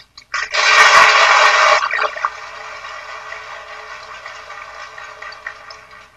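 Audience applauding in an old, lo-fi archival recording. It swells suddenly about half a second in, is loudest for just over a second, then carries on more quietly and fades near the end.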